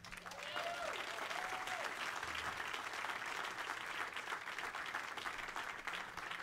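Audience applauding at the end of a live band's song, with a voice briefly calling out near the start.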